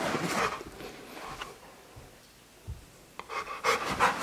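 Rottweiler panting in short, breathy strokes, heard near the start and again in the last second, with a quieter stretch between.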